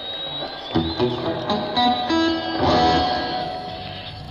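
Electric guitar played live on stage through an amplifier: a few short notes, then a chord about three seconds in that rings and fades.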